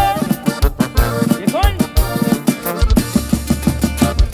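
Instrumental break of a live regional Mexican band: tuba bass, drum kit, accordion and twelve-string guitar playing a steady, bouncing rhythm between sung verses.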